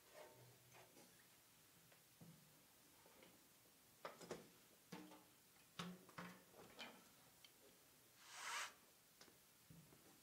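Near silence: room tone with a scatter of faint clicks and small handling knocks, and a short soft hiss about eight and a half seconds in.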